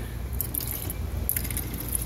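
Used oil running out in a thin stream from a ball valve on the drip pipe at the bottom of a waste-oil burner tank, trickling and splashing, over a steady low hum. The pipe is being drained as an oil-water separator.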